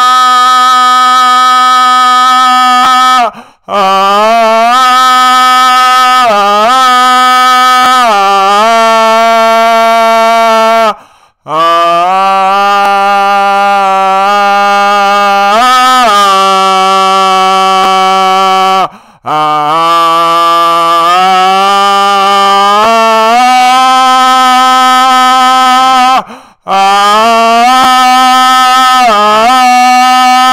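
A man's voice singing a wordless, improvised chant, holding long loud notes and sliding between pitches, with a short break for breath four times.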